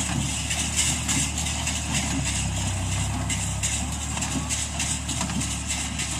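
A New Holland TT55 tractor's diesel engine running steadily while it drives and pulls a Massey 20 baler as it compresses rice straw into bales.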